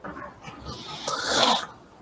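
A man's breath drawn in, a soft hiss that swells to a peak about one and a half seconds in and then fades.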